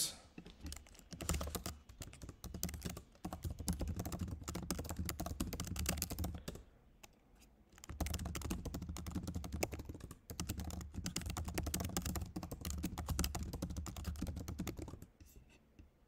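Fast typing on a computer keyboard in runs of key clicks, with a pause of about a second near the middle.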